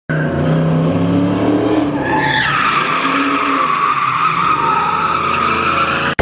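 Car drifting: the engine runs hard under throttle while the tyres skid, and about two seconds in a loud tyre squeal takes over, sliding down in pitch and then holding steady.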